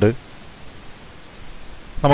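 Faint steady hiss of the recording's background noise in a pause in a man's narration; the end of a spoken word is heard at the very start and the next word begins right at the end.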